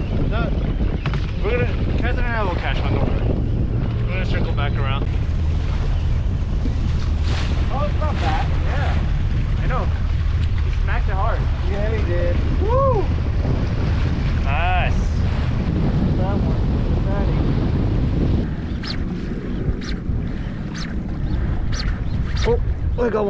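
Wind rumbling on the microphone over the low, steady hum of a boat's outboard motor, with short voice calls now and then; the rumble eases a little over the last few seconds.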